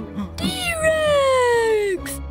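A cartoon character's long cry, about one and a half seconds, sliding slowly down in pitch.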